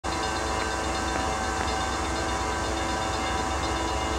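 Norfolk Southern freight train approaching in the distance at low speed, a steady unbroken sound with several held tones over a low rumble.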